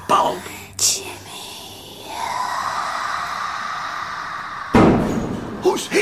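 Radio-drama sound effects: a click, then a sustained eerie hazy tone lasting about three seconds, broken off by a single loud, heavy slam about five seconds in. Brief vocal sounds come at the start and near the end.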